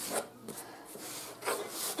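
Cardboard shipping box scraping and rubbing across a wooden tabletop as it is turned and shifted, in a few short noisy strokes.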